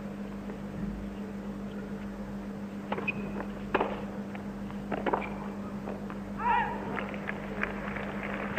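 Tennis rally on a hard court: several sharp pops of the ball on the rackets, about a second apart, over a steady low broadcast hum. Near the end comes one short, high-pitched shout, the line call as a Sampras backhand lands out.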